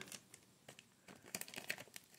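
Faint crinkling of thin plastic protective wrap being handled and peeled off a small action figure, in scattered crackles that come more often in the second half.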